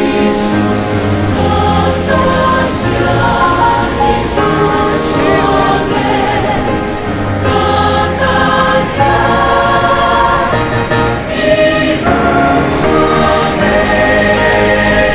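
Music: a choir singing long, sustained notes over a steady bass accompaniment.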